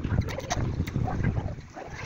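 Wind buffeting the microphone while a bicycle rolls over brick paving: a low rumbling rush with a few faint rattles.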